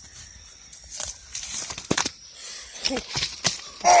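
A few short, sharp knocks and scuffs about a second apart, from handling on the mud around a landed alligator gar.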